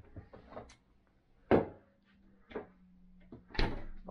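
A few knocks and bumps as food packs are handled at an open refrigerator and set down on a kitchen counter, the loudest about one and a half seconds in.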